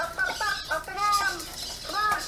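Meccanoid robot speaking through its own speaker in a high-pitched, sped-up robot voice, in short arching phrases.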